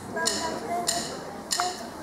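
A drummer counting the band in: three short, sharp clicks, evenly spaced about two-thirds of a second apart, with faint murmuring voices underneath.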